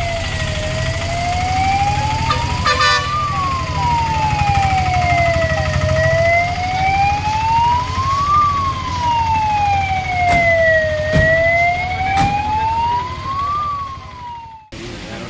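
Emergency-vehicle siren wailing, its pitch sweeping slowly up and down about every five seconds, over a low steady rumble with a few sharp clicks.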